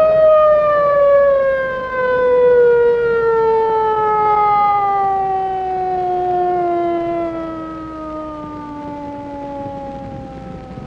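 A siren winding down: one long tone that falls slowly and steadily in pitch, easing off in loudness toward the end.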